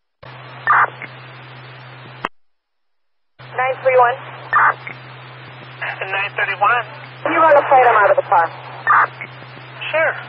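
Police scanner radio traffic: a transmission opens with hiss and a steady low hum, carries a brief burst, and cuts off with a click about two seconds in. About a second later another transmission opens and carries muffled, unintelligible radio voices through the rest.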